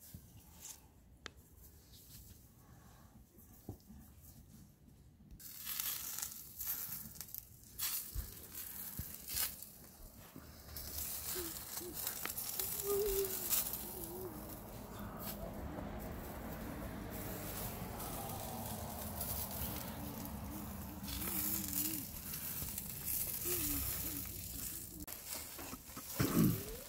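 Lamb kabobs sizzling over a charcoal grill, with the coals and dripping fat crackling and popping. It is quiet at first, and the sizzle sets in about five seconds in.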